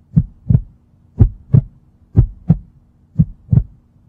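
Heartbeat sound effect: paired low thumps, lub-dub, about once a second, four beats in all, over a faint steady hum.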